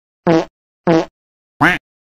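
Cartoon sound effect: three short pitched blips, each rising and falling in pitch, a little over half a second apart.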